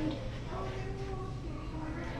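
A person's voice speaking softly in long, drawn-out tones, the words not made out, over a steady low hum.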